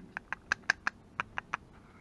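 A quick, irregular run of about ten light, sharp clicks over a second and a half.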